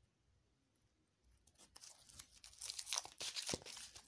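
A deck of tarot cards being shuffled by hand close to the microphone: a quick run of crisp papery flicks and slaps that starts about a second and a half in and grows louder.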